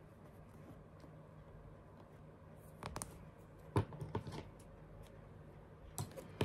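Hands handling the fabric and small sewing things on a work table: faint rustling at first, then a few short sharp clicks and taps a little before halfway, the loudest about four seconds in.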